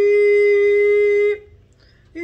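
A woman's voice holding one long, steady sung note without accompaniment, as part of a wordless chant. It cuts off after about a second and a half, leaving a short pause.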